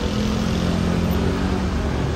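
A motor vehicle's engine running close by in street traffic: a steady, even hum over the low rumble of the road.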